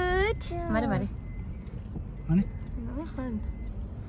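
A toddler's high-pitched vocalising in the first second, over the steady low rumble of a car heard from inside the cabin with the window open.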